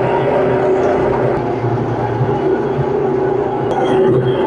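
Metal-cutting bandsaw running with its blade cutting through a mild steel bar. A steady hum with a constant whine over the noise of the cut.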